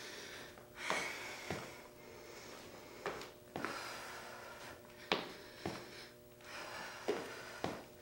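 Faint breathing and footfalls of a person doing alternating lunges: an exhale about every two seconds, each followed about half a second later by a short thud as a foot lands.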